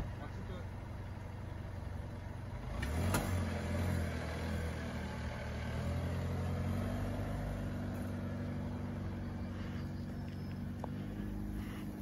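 An SUV's engine running as the vehicle pulls away slowly along a dirt track and climbs away. There is a sharp knock about three seconds in as the engine note swells, then a steady low engine hum.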